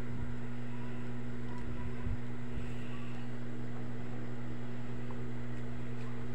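A steady low hum with an even background hiss, unchanging throughout.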